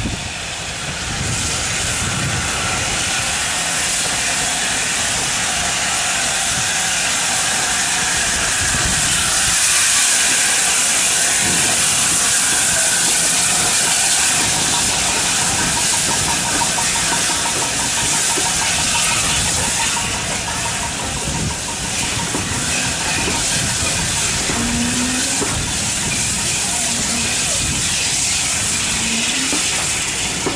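LNER A4 Pacific steam locomotive 60019 Bittern passing at close range with a loud, continuous hiss of steam, loudest about ten seconds in.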